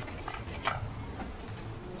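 A few light plastic clicks and handling noise as a hose is pressed into its plastic retaining clips on the engine.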